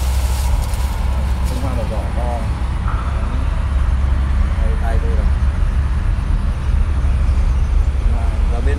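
A steady low rumble throughout, with a man's voice heard faintly and briefly a few times.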